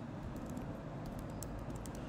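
Typing on a computer keyboard: light, irregular key clicks as a line of code is entered.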